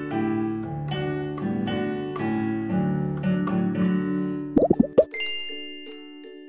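Violin played with piano accompaniment, with a run of notes over a lower piano part, ending about four and a half seconds in. A few quick rising pops follow, then a light jingle of held tones and soft plucked notes begins.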